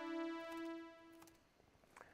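A chord of low-pass-filtered sawtooth synth tones in SuperCollider. Its remaining notes are released one after another as each synth's gate is set to zero, so the chord thins out and fades away by about a second and a half in. Faint clicks are heard.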